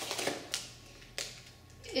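Plastic snack packaging crinkling as it is handled, with a couple of sharp taps about half a second in and just after a second.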